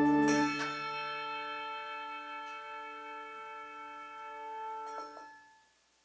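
Pair of brass handbells rung twice about half a second in as an organ chord ends; the bells ring on with many overtones, slowly fading, until they are damped just after five seconds in.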